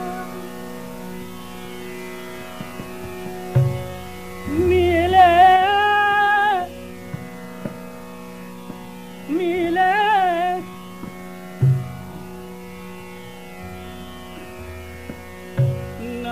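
Hindustani classical vocal in raga Bageshree: a singer sings two short, ornamented, wavering phrases over a steady drone, with a few low tabla strokes between them.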